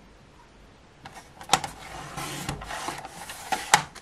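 Sliding-blade paper trimmer cutting through glitter cardstock: a scratchy scraping as the blade carriage is pushed along the rail, with a sharp click about a second and a half in and another near the end.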